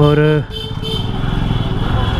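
Small two-wheeler engine running steadily at low speed, heard from the rider's seat, its firing a fast, even rumble.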